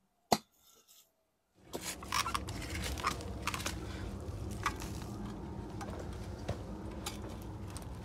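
A single click, then about a second of silence, then light crackling and rustling clicks over a steady low background rumble.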